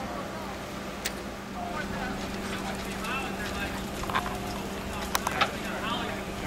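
Indistinct voices of people talking in the background over a steady low hum, with a few sharp clicks or knocks about a second in and again near the end.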